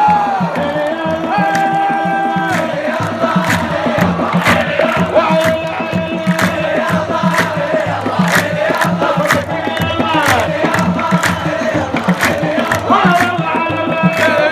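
A crowd of football supporters sings a chant together to a steady beat on large frame drums, with long held notes in the melody.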